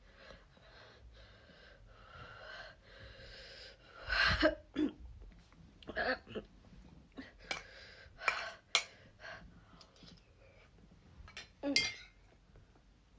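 A woman breathing hard after eating a Dragon's Breath superhot chilli. Her mouth is burning and her nose is running. Soft breaths give way, about four seconds in, to a run of short, sharp coughs and gasps, with one more burst near the end.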